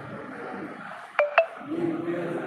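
Two quick electronic beeps, about a fifth of a second apart, a little over a second in, over a background murmur of voices in a room.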